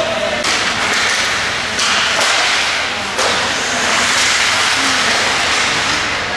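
Ice skate blades scraping and carving the rink ice in a run of hissing strokes, several starting abruptly, over the open noise of an indoor hockey rink.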